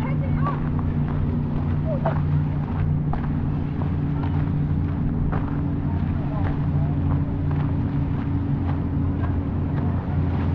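A steady low engine drone runs throughout, with brief high calls and clicks scattered over it.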